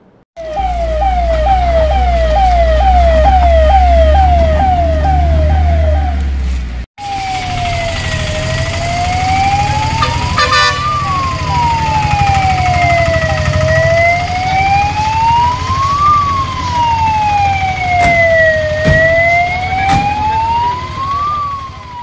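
Emergency vehicle siren over a heavy diesel engine rumble: first a fast yelp of about two sweeps a second, then, after a break about seven seconds in, a fire engine's slow wail rising and falling roughly once every five seconds.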